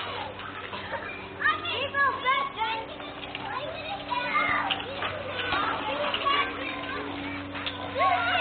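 Young children shouting, calling and chattering while they play on a playground, many high voices overlapping, with a steady low hum underneath.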